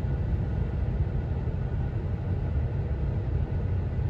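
Steady low rumble of a Jeep's engine running, heard inside the cabin.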